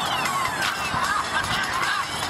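Hip-hop beat playing: a high synth line that glides down in pitch over about the first second, over wavering synth notes.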